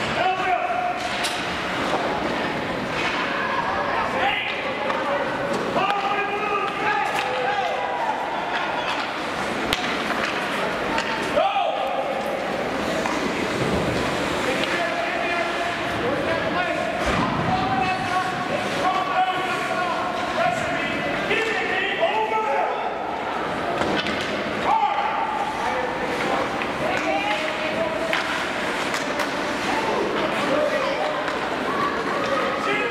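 Sounds of an ice hockey game in an arena: indistinct voices calling out throughout, with sharp knocks and slams of sticks and puck against the ice and boards.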